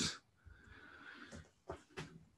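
A quiet pause in speech holding faint breathing and a few small clicks, the last one right at the end.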